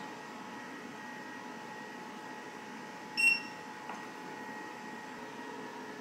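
The EcoFlow Delta Max power station gives one short high electronic beep about three seconds in as its IoT reset button is held down. Under it the unit hums steadily while it charges.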